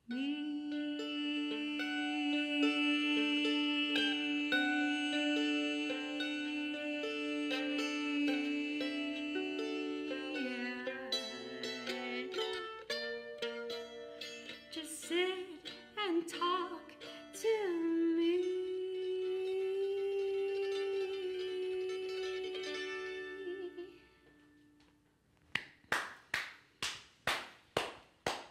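A woman singing long held notes with a stretch of quick scat runs in the middle, over picked mandolin. The song ends about 24 seconds in, and after a brief pause comes a few seconds of hand clapping.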